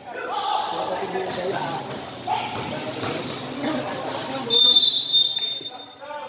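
Referee's whistle, two short high-pitched blasts about four and a half seconds in, stopping play. Voices and court noise run beneath it.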